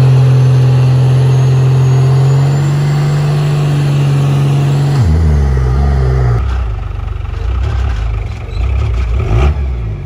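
Lifted Dodge Ram pickup's diesel engine held at high, steady revs under heavy load while towing a box trailer, with the tyres spinning. About five seconds in, the revs drop suddenly and the engine runs unevenly at lower speed, the throttle rising and falling.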